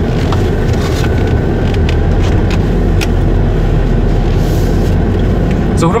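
Ford F-250 Super Duty's 6.7 diesel running steadily, heard as a low rumble inside the cab, with a few light clicks scattered through.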